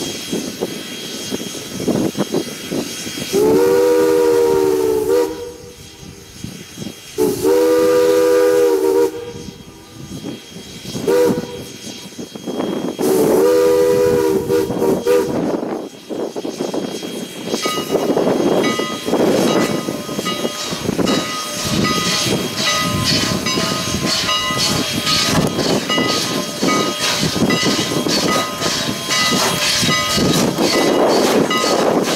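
Canadian National 89's Pennsylvania Railroad three-chime steam whistle sounds a chord of several notes in the grade-crossing pattern: long, long, short, long. After that, from a little past halfway, the 2-6-0 steam locomotive works closer with a quick regular exhaust beat and rail clatter, over gusty wind.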